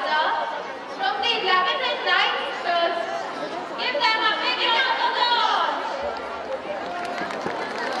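Women talking into handheld microphones through a PA system in a large hall, with audience chatter underneath.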